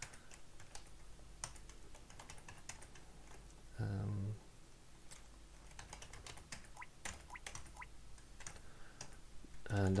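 Computer keyboard typing: faint, irregular key clicks, with a short hummed voice sound about four seconds in.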